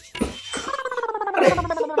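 A short thump, then a drawn-out vocal cry lasting over a second whose pitch falls steadily. It comes from the tussle as a man is dragged by the leg off a bed.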